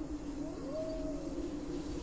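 Atmospheric intro of a Turkish rap music video's soundtrack: a low steady drone, with a single higher tone that rises about half a second in, holds, and slowly falls away.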